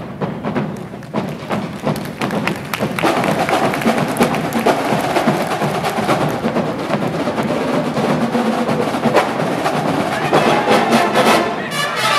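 Marching band percussion section playing a busy break of sharp drum and rim hits while the brass rests; the full brass comes back in right at the end.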